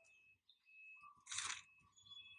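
Near silence broken by one brief, soft rustle about one and a half seconds in: the page-turn sound of a digital flipbook turning to the next spread.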